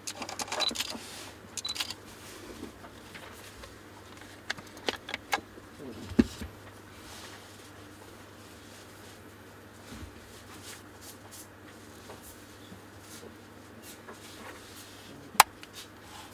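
Handling noise of a Fujinon XF 23mm F1.4 R camera lens in gloved hands: scattered small clicks and knocks with soft rubbing as the lens and its rings are handled. A single sharp click near the end is the loudest sound.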